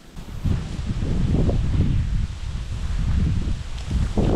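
Wind buffeting the microphone, a loud, uneven low rumble, with dry reeds rustling.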